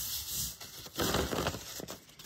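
A thin paper sheet rustling against a gel printing plate as it is rubbed and handled, with a louder stretch of papery crinkling in the second half.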